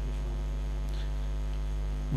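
Steady electrical mains hum from the microphone and sound-system chain: a low 50 Hz buzz with a ladder of overtones, unchanging throughout.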